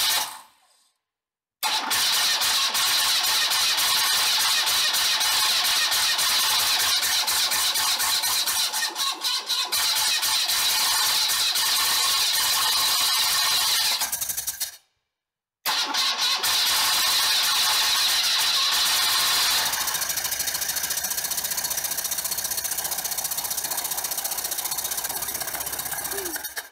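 BMW R80 G/S 797 cc flat-twin boxer engine running with a cylinder-head valve cover off. The exposed rocker arms and valves make a fast, steady ticking clatter over the engine note. The sound breaks off twice briefly, near the start and about halfway.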